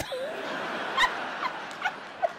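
A theatre audience laughing at a comedian's punchline, dying down after about a second, with a woman's short high-pitched laughs over it. A sharp click about a second in.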